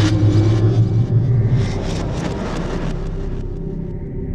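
Cinematic logo-reveal sound design: a deep, loud rumbling drone with a hissing swell through the middle, slowly fading toward the end.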